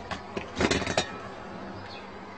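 A few short metallic clinks and knocks as a trumpet is handled, bunched together in the first second.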